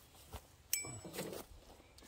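Ratchet strap hardware being handled: a light click, then a sharp metallic clink with a short ring.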